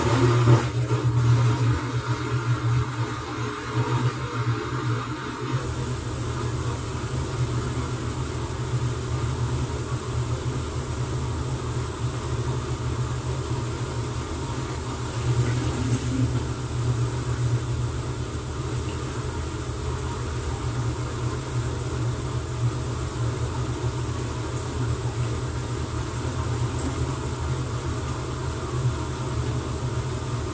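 TCL TWF75-P60 direct-drive inverter front-load washing machine running steadily at speed in its final spin, its drum and motor giving a deep, even hum. The sound sets in suddenly and loud at the outset, and a faint high whine joins about five seconds in.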